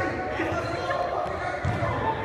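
Basketball bouncing on an indoor court, with players' voices in the background.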